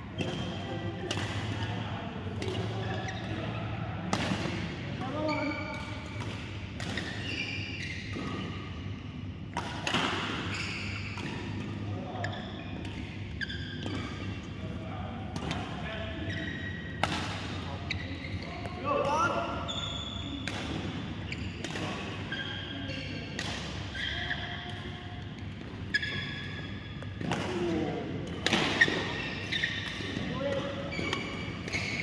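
Badminton rally: repeated sharp racket strikes on the shuttlecock at an irregular pace, with short squeaks of shoes on the court mat.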